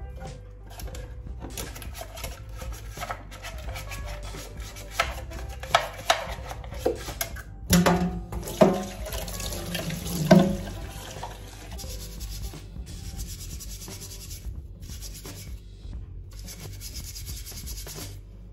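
Scrubbing with a steel wool scourer at a stainless steel sink, a steady scratchy rubbing. Between about five and ten seconds in, a metal part knocks against the sink several times, and the tap runs.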